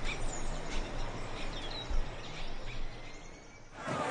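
Outdoor background ambience: a steady hiss of noise with scattered short bird chirps, fading out shortly before the end.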